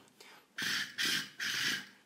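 Two short breathy rushes of air through a hookah hose mouthpiece, each lasting about half a second, with a brief gap between them.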